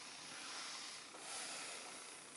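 Faint steady hiss of room tone during a pause in speech.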